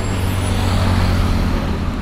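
Steady low hum of a vehicle engine with road noise from highway traffic.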